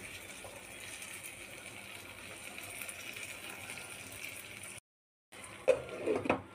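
Egg curry simmering in a pot, a steady hiss, cut by a half-second gap near the end. Just after the gap, a short knock as a glass lid is set on the pot.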